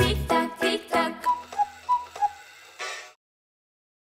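Clock tick-tock sound effect: sharp ticks about three a second, alternating a higher and a lower tone, as a closing music cue dies away. It cuts off suddenly about three seconds in.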